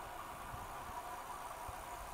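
Faint, steady rushing of wind and road noise while riding a bicycle on a country road, with a couple of faint low thumps.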